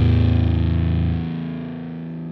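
Distorted electric guitars of a live rock band holding a final chord that slowly dies away; the deepest notes drop out just over a second in.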